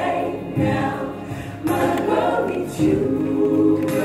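Recorded gospel choir singing a slow song, the voices holding long chords that change about once a second.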